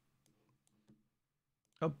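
A few faint, quick computer mouse clicks in the first second while a browser window is being resized.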